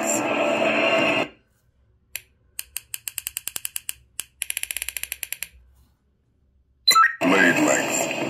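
Crystal Focus 10 (CFX) lightsaber soundboard ticking while the blade length setting is stepped through: a single click, then a run of evenly spaced ticks at about eight a second, a short gap, and a faster run at about twelve a second. Voice with music plays at the start and returns near the end.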